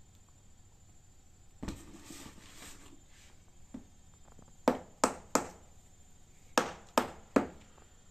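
Dead-blow mallet with a hard rubber-like head knocked against a ceramic tile floor: three sharp knocks about a third of a second apart past halfway, then three more about a second later.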